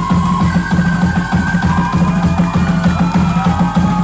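Loud music with a dense, steady drum beat and a melody line over it.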